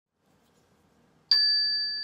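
A small metal chime struck once about a second in, giving a clear high ding that rings on and slowly fades.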